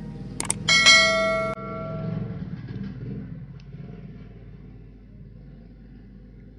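Subscribe-button sound effect: two quick mouse clicks, then a bright bell ring that cuts off suddenly after under a second. A low rumble follows and fades away.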